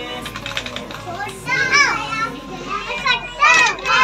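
Young children calling and chattering in high voices, with the loudest calls about halfway through and again near the end, and a run of light rapid clicks near the start.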